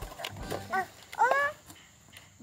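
A small child's short, high-pitched vocal call with a rising pitch about a second in, the loudest sound here.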